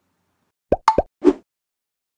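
Intro title sound effect: four quick cartoon-style pops packed into under a second, about halfway in, the first ones rising in pitch.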